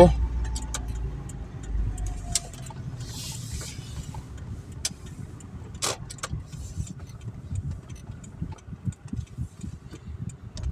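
A car's engine and road rumble heard from inside the cabin as the car drives slowly and pulls up. The rumble is strongest in the first couple of seconds and then dies down, with scattered small clicks and rattles in the cabin.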